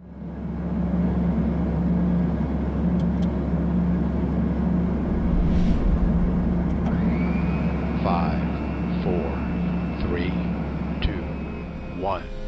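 Rocket launch roar: a steady, dense deep rumble with hiss that sets in abruptly and holds loud throughout. A thin rising whistle-like tone enters about seven seconds in and then holds.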